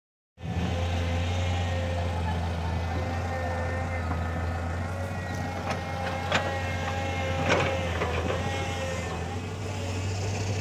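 A motor vehicle engine idling steadily, a low hum with a few short knocks and clicks in the middle.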